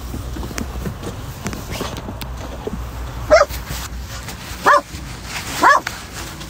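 A Labrador barking three times, short barks that slide down in pitch, starting about three seconds in and roughly a second apart, over a low steady hum.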